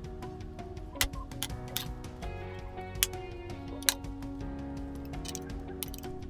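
Background music over several scattered sharp clicks, the sharpest about one, three and four seconds in. The clicks are the plastic snap clips of a laptop's case giving way as a card is pried along the seam.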